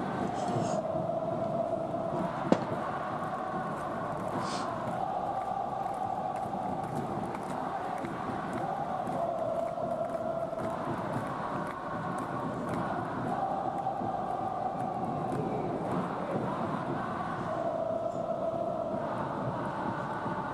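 Large stadium crowd of football supporters chanting in unison, a steady sung chant whose pitch shifts every second or two. One sharp click about two and a half seconds in.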